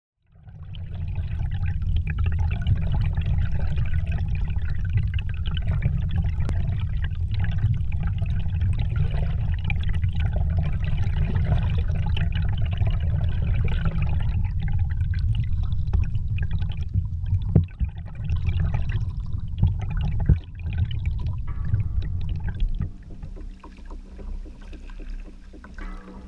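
Underwater ambience picked up by a submerged camera: a steady low rumble of water with faint scattered crackles and clicks. It drops away to a much quieter passage about 22 seconds in.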